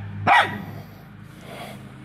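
A hound barks once, sharp and loud, just after the start, then gives a fainter bark about one and a half seconds in.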